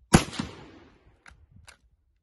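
A single shot from a Model 1895 Chilean Mauser bolt-action rifle in 7×57mm Mauser: a sharp report that dies away over about half a second. Then come two short clicks a little over a second in.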